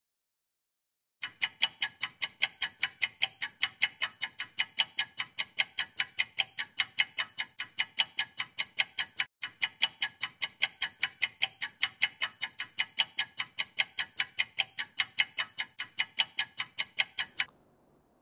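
Ticking-clock sound effect, quick even ticks at about four a second, with a brief break midway, marking the candidate's one-minute preparation time running down.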